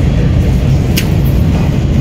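Steady low rumble of airport terminal background noise, with one sharp click about a second in.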